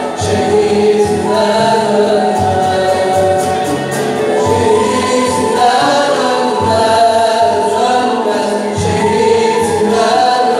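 Male choir singing an ilahi, a Turkish Islamic hymn, in sustained melodic lines, amplified through microphones.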